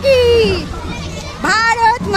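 Children's high-pitched voices calling out: one long falling call at the start, then several short calls near the end.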